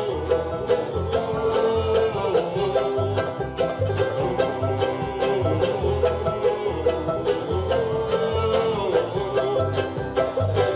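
Acoustic bluegrass string band playing live: upright bass, acoustic guitar and mandolin. The strings strike a steady beat about three times a second, with low bass notes underneath.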